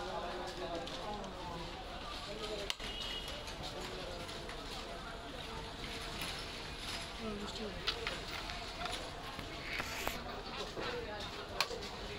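Background chatter of several voices over steady street noise, broken by a few sharp clicks.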